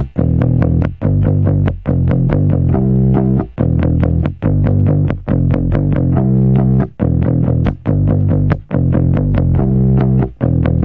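Fender '51 Precision Bass reissue with a single-coil pickup and flatwound strings, played through overdrive: a repeating rock riff of held notes broken by short gaps about once a second. The tone is vintage and 70s-sounding but rock and roll.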